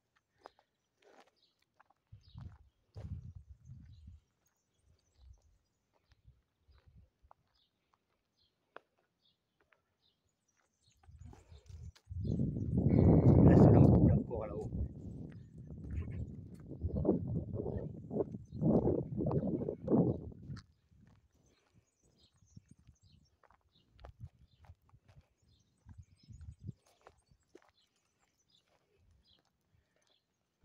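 Footsteps on a gravel and grass path as a camera holder walks. In the middle comes a loud stretch of muffled low noise lasting about eight seconds, rising in a few surges.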